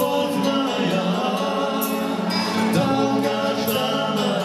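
Two men singing a Russian song as a duet through microphones over amplified instrumental backing, with a cymbal struck at regular intervals.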